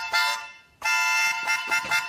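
Held chords on a free-reed instrument: a chord fades out within the first half-second, then after a short gap a new chord comes in and is held, with notes changing near the end.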